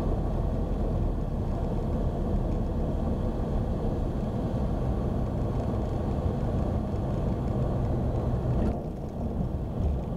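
Steady cockpit drone of a Tecnam P92 Echo Super light-sport aircraft's Rotax 912 engine and propeller at idle power, while it lands and rolls out on the runway. The sound dips for about a second near the end.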